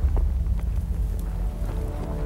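Wind buffeting an outdoor camera microphone, a steady low rumble, with a few faint clicks from handling or brush. Music fades in near the end.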